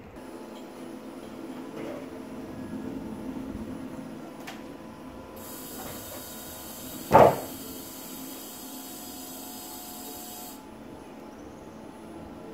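A single loud thump about seven seconds in, over a faint steady hum and a brief hiss.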